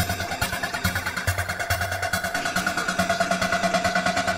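Live techno music: a sustained synth tone held over a fast, evenly pulsing electronic beat.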